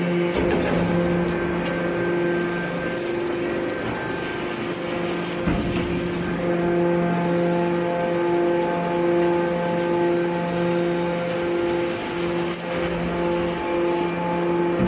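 A hydraulic scrap-metal baler runs with a steady mechanical hum as it presses a load of steel turnings. In the second half the hum pulses about twice a second. There is a single knock about five and a half seconds in.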